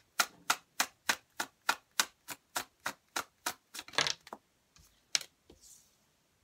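A deck of tarot cards being shuffled overhand: small packets of cards tap down into the hand in an even rhythm of about three a second. About four seconds in there is a brief longer rustle of cards, then one last tap.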